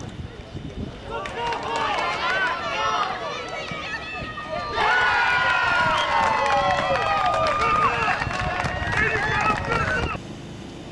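Spectators and players shouting as an attack builds toward goal, then a sudden burst of loud cheering and yelling from many voices about five seconds in as the goal is scored.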